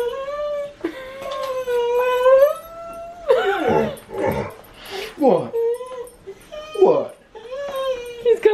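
A large dog whining in long, high, drawn-out cries. Two cries are held steady for a second or more at the start. Shorter cries slide down in pitch a few times in the middle, and another long whine comes near the end.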